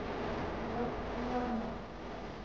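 Indistinct chatter of people in a covered market hall, with short snatches of voices rising now and then over a steady background hum.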